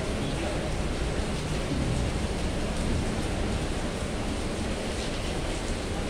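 Heavy rain falling, a steady dense hiss.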